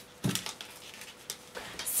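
Satin fabric being handled on a worktable: a few brief rustles and light knocks.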